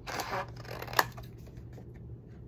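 Paper being handled and slid across a craft table: a short rustle near the start, then a single sharp click about a second in.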